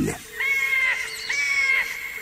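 Bird-call sound effect: two long, crow-like caws, each about half a second, the second starting about a second after the first.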